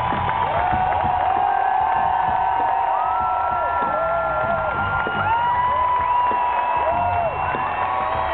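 Electric guitar solo played live: long held notes, several bent up and back down, over a cheering crowd.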